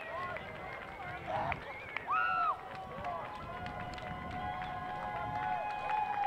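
Overlapping shouts and chatter from a group of baseball players congratulating one another on the field, with one louder call about two seconds in.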